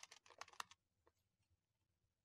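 Faint typing on a computer keyboard: a quick run of about six keystrokes, stopping before a second in.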